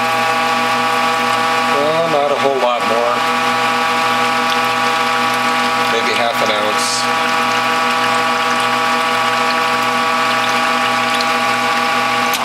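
Norwalk juicer's hydraulic press running under load, a steady motor-and-pump hum with many even overtones, as it squeezes a cloth-wrapped ball of orange pulp for its last juice.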